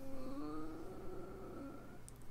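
A faint, drawn-out hummed voice, a thinking "hmm", that trails off near the end.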